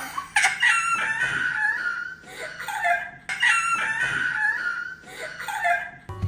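Girls laughing hard, high-pitched shrieking laughs in several long bursts.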